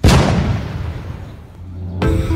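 Cannon-fire sound effect: one loud boom at the start that fades away over about a second and a half.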